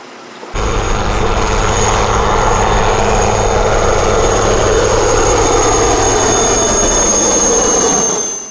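Navy helicopter flying close past: the turbine's high whine over the pulsing of the rotor blades, starting abruptly about half a second in, its pitch slowly dropping as it passes.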